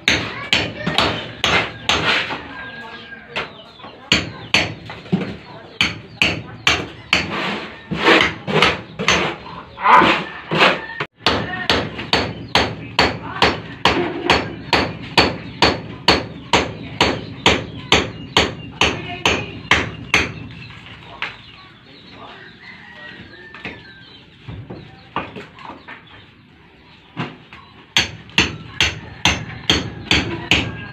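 Hammer striking masonry in a steady run of sharp blows, about two a second, that thins to a few scattered hits for several seconds about two-thirds of the way through and picks up again near the end.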